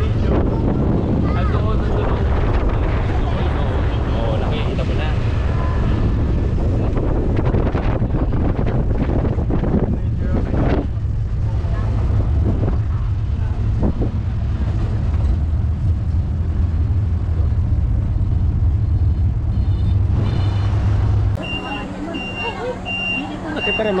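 Steady low rumble of a moving open-sided zoo shuttle tram, with people chatting over it in the first half. About three seconds before the end it cuts to a quieter scene with a high electronic beep repeating about twice a second.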